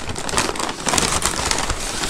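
Brown paper takeout bag rustling and crinkling as it is handled and reached into: a continuous run of dry crackles.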